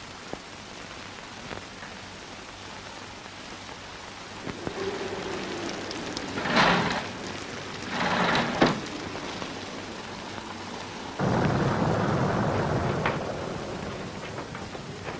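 Steady heavy rain on an old film soundtrack, with louder gusts of noise about six and a half and eight seconds in. A loud roll of thunder breaks in suddenly about eleven seconds in and lasts two seconds.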